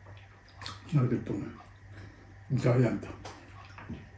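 Two loud slurps of sour pork-rib soup (sinigang) from a spoon, about a second and a half apart, each with a voiced sound in it.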